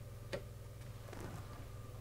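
A single faint click from a hand handling the circuit board and its connector, over a low steady hum.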